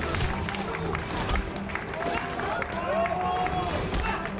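Staged fist fight with short sharp hits and scuffling, shouts and grunts from the fighters, over background action music.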